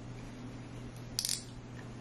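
A brief metallic clink about a second in, as the stainless-steel head of an immersion blender knocks against the pot while it is lowered into the soup, over a low steady hum.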